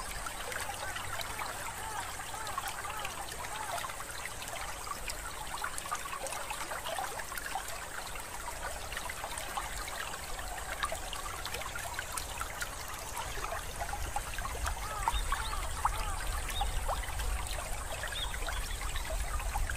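Faint, steady trickling water, like a small babbling stream, with a low rumble that grows louder toward the end.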